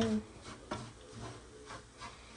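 Wooden spoon stirring and scraping semolina in a pan, heard as a few soft, irregular scrapes.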